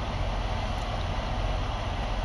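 Steady low rumble with an even hiss over it, heard inside a truck's sleeper cab: the parked truck's engine idling and the cab's air-conditioning fan running.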